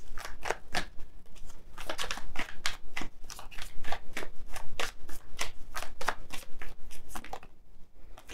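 A deck of tarot cards being shuffled by hand: a quick, uneven run of soft card clicks and snaps that thins out near the end.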